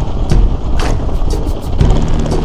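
Mountain bike rolling over a rough gravel dirt road, with wind rumbling on the microphone and sharp rattles from the bike as it jolts over bumps several times.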